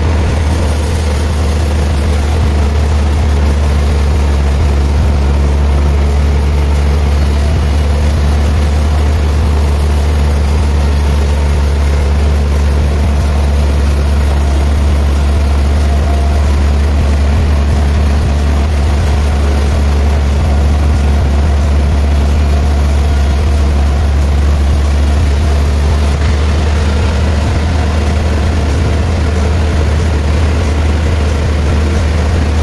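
Large vertical band sawmill running, its band saw blade cutting a big log into a slab, with a steady, loud low hum from the machinery throughout. A faint high hiss drops out a few seconds before the end.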